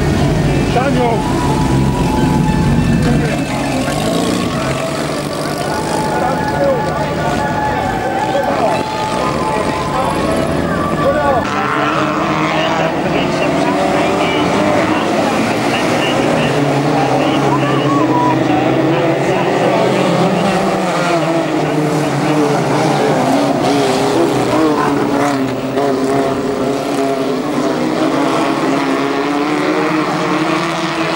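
Several Heritage F2 stock cars with Ford side-valve engines racing together, their engines revving up and down in pitch as they come past and away through the corners.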